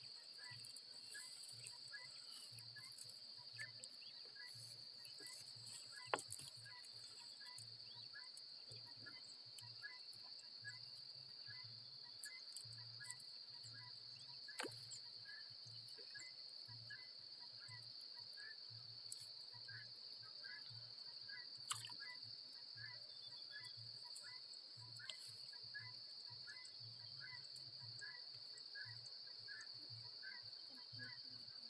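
Steady, high-pitched insect chorus from the reeds and grass, with short chirps repeating every second or so and an occasional sharp click.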